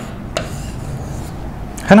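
Pen strokes on a writing board as a box is drawn around the answer: a sharp tap about a third of a second in, then faint scraping.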